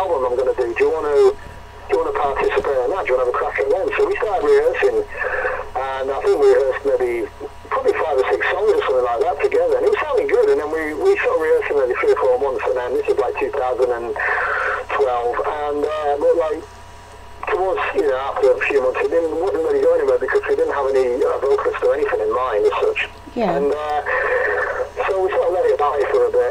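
A man talking continuously with brief pauses. The voice sounds thin and narrow, as over a phone-line connection.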